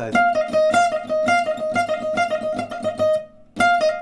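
Archtop jazz guitar played with a pick in a fast trill figure, alternating rapidly between two neighbouring notes with picked and hammered-on strokes. The run breaks off briefly near the end and then starts again.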